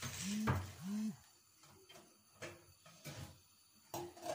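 Kitchen cookware being handled off-camera: a handful of light knocks and clicks, one after another, while she goes to fetch the pan's lid. Two brief hums of a woman's voice come within the first second.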